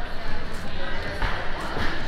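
Steady background noise of a busy indoor hall: indistinct crowd chatter over a low hum, with no clear foreground voice.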